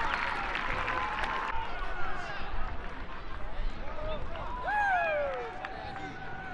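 Football stadium crowd noise with scattered voices calling and shouting, including a few loud falling calls near the end. The background changes abruptly about a second and a half in.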